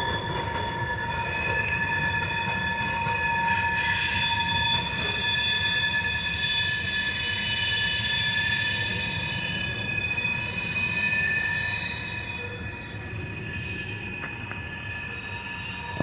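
Freight cars rolling past with their wheels squealing: a steady high-pitched squeal in several tones over the low rumble of the train, getting quieter after about twelve seconds.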